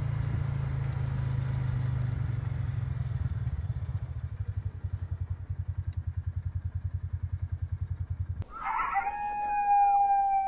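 A low motor-like hum, becoming an even pulsing in its second half and cutting off abruptly near the end; then a rooster crowing, one long call held for about two seconds.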